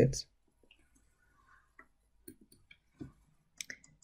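A few faint computer mouse clicks, spaced irregularly, while software windows are closed and options applied.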